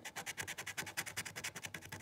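Metal dog-tag scratcher scraping the coating off a scratch-off lottery ticket in quick back-and-forth strokes, about twelve a second.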